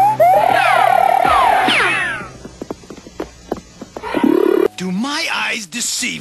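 Cartoon soundtrack: a loud warbling trill with sliding whistle-like glides for about two seconds, then a few faint clicks. A voice comes in near the end.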